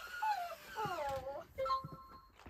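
WowWee Dog-E robot dog's speaker playing electronic dog sounds: pitched calls that slide up and then down, followed near the end by a short steady beep.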